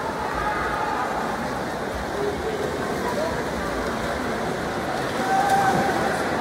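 Racing swimmers splashing in an indoor pool, a steady wash of water noise mixed with the voices of spectators on deck. A short call rises out of the crowd near the end.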